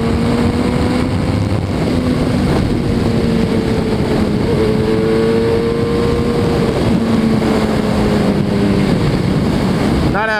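Suzuki Hayabusa's inline-four engine running at a steady cruise, its pitch drifting only slightly, with heavy wind noise on the microphone.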